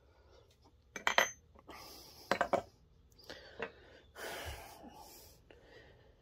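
Steel nut-driver shafts clinking against one another as they are handled in a wooden rack. There are two clusters of sharp clicks, the first about a second in with a brief high ring and the second just past two seconds, then softer handling noise.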